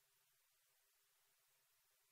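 Near silence: faint broadcast hiss during a suspended session.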